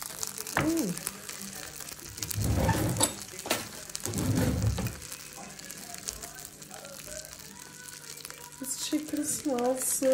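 A glass roasting dish being handled on a wooden board, with two scraping, rustling bursts a few seconds in and a couple of light clinks. A metal spoon then dips into the pan juices to baste a roast chicken.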